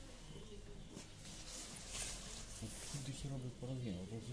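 Low steady hum of shop background, then a person's voice talking indistinctly from a little under three seconds in.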